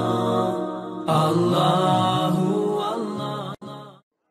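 Intro music with a chant-like voice over sustained tones. It dips and starts again about a second in, then cuts off suddenly near the end.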